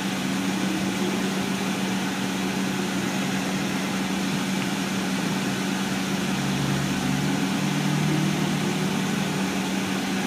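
Cabin sound of a 2006 MCI D4500CL coach: its diesel engine running under a steady hum, the engine note rising twice, once near the start and again about two-thirds through, as the coach pulls away and speeds up.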